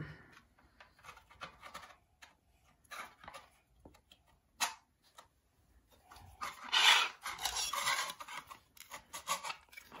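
Hard plastic toy basketball-game parts clicking and rubbing as the red backboard is pressed onto the blue hoop piece. Scattered small clicks, one sharp click about halfway through, and a longer spell of scraping in the second half.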